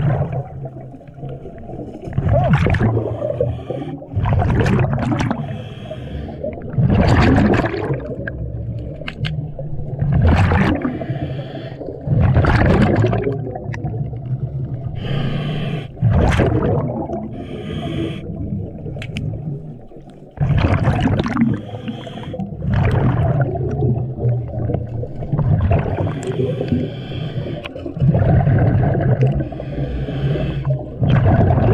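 Diver breathing through a scuba regulator, heard underwater: a rush of exhaled bubbles every two to three seconds, with a softer hiss between them, over a steady low rumble.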